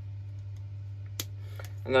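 A low steady hum, with one sharp snip of flush wire cutters cutting through twisted wire a little over a second in and a fainter click shortly after.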